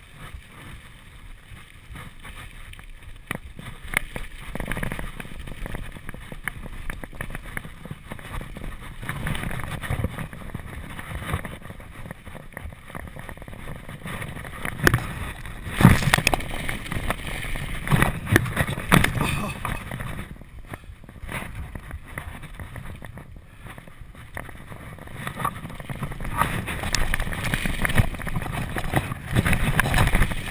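Mountain bike riding down a rocky dirt trail, its tyres rolling over dirt and rock and the bike rattling over bumps. There is a loud sudden thump about halfway through.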